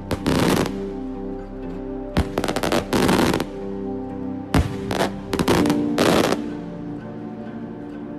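Daytime aerial firework shells bursting overhead: clusters of sharp bangs and rapid crackling from the secondary bursts, in three bouts, about a second and a half apart. Synthwave background music plays steadily underneath.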